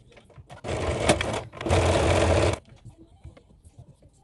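Electric sewing machine stitching in two short runs of about a second each, separated by a brief pause. The first run starts under a second in.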